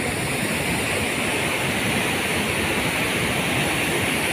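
Floodwater pouring over a river weir: a steady, unbroken rush of turbulent water.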